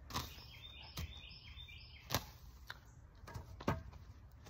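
Footsteps on dry grass and soil: half a dozen soft, irregular thuds, with a few faint bird chirps in the first half.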